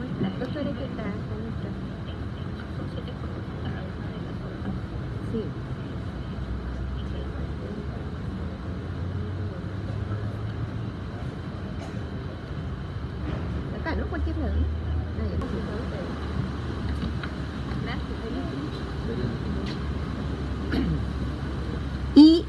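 Background of a meeting room: a steady low rumble with faint, indistinct murmured voices and a few small knocks.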